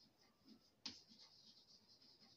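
Faint scratching and tapping of chalk writing on a blackboard, with one sharper tap a little under a second in.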